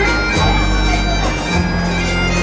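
Highland bagpipes playing a tune over their steady drones, loud throughout.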